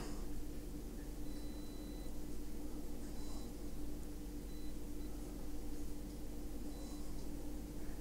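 Quiet room tone: a steady low electrical hum under faint hiss, with a few brief, faint high whines.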